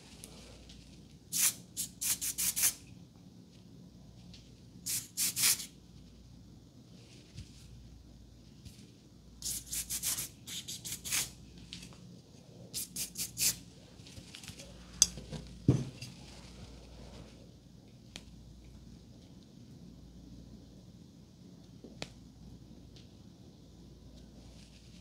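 Aerosol hairspray sprayed in short hissing puffs, in several bursts through the first fourteen seconds or so, to set flyaways. A couple of light clicks and a low knock follow about two-thirds of the way in.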